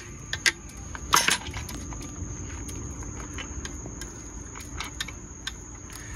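Small clicks and rustles of hands working braided fishing line through the eye of a large plastic jerkbait lure while tying a uni knot, with one brief louder rustle about a second in. A steady faint high-pitched tone runs underneath.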